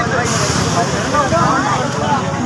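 Crowd of people talking and calling out over the engine of a lorry running close by, with a steady high hiss starting about a quarter second in.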